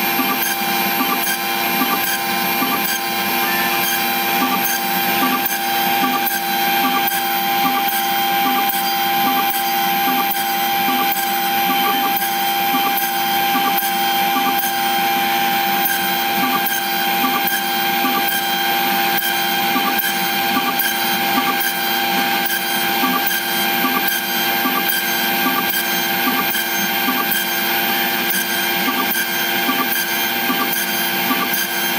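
LPKF 93s PCB milling machine drilling 0.9 mm holes in a circuit board: its spindle at about 52,000 rpm gives a steady high whine over the hum of the dust suction. A regular tap about every half second marks each plunge of the drill into the board.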